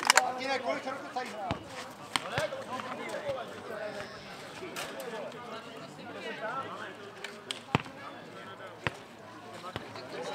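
Ball being kicked and bouncing on a clay court during a nohejbal rally: a series of sharp thuds spaced a second or more apart. Spectators talk in the background.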